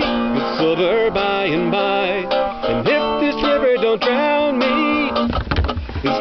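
A man singing a folk song to his own strummed acoustic guitar, with a brief low rumble near the end.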